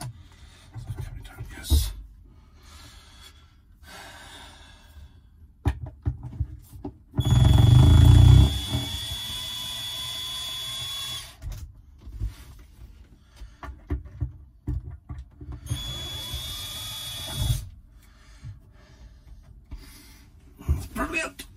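Ferrex cordless drill-driver spinning a slotted screw in a wooden cabin panel. It runs twice, first for about four seconds from about seven seconds in, loudest as it starts, then for about two seconds near the end, with a steady high whine from the motor. Light knocks of handling come between the runs.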